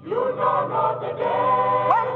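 Mixed choir of men's and women's voices singing together into microphones, a new sung phrase beginning right at the start.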